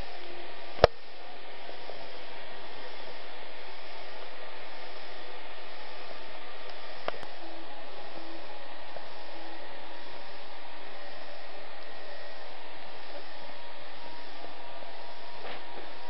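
Steady, even hiss with a sharp click a little under a second in and a faint tick near seven seconds.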